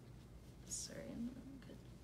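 A faint, soft voice, near a whisper, saying a few unclear words about midway through.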